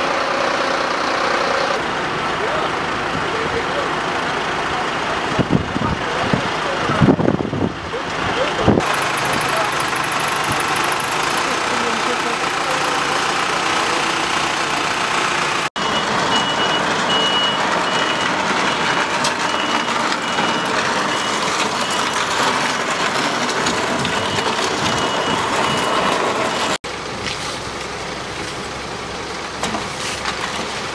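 Outdoor vehicle noise: heavy vehicle engines running, with voices in the background. In the middle part a vehicle's reversing alarm beeps at an even pace.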